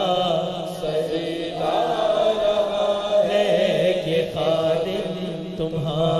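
A man singing an Urdu naat in long, wavering held notes over a steady low drone.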